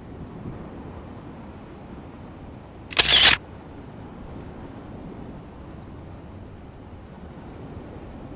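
A camera shutter click, one short sharp burst about three seconds in, over steady outdoor background noise.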